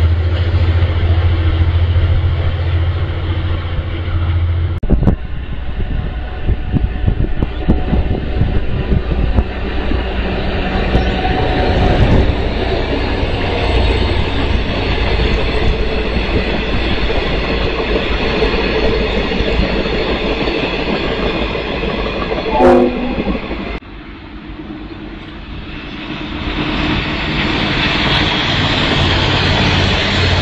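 Diesel trains crossing a rail bridge. A strong low engine drone comes first, then a long stretch of wheels clicking and rumbling over the rail joints. After a sudden drop near the end, another train approaches and grows louder.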